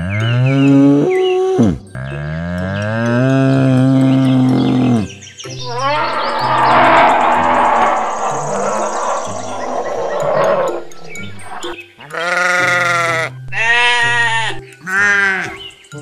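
Animal calls in sequence over background music: first two long, rising lowing calls from a water buffalo, then a rough growl from a brown bear, then sheep bleating several times in quick succession near the end.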